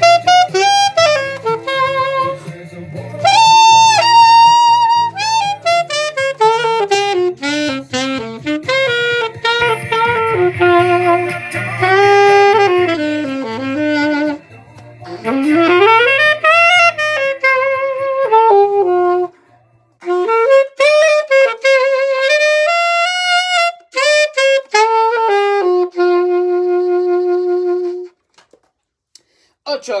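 Alto saxophone playing a melody over a low accompaniment that drops out about two-thirds of the way in. The saxophone carries on alone and ends on a long held note near the end.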